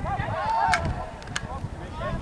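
Football players shouting on the pitch, with a drawn-out yell about half a second in, and two sharp knocks during a tackle.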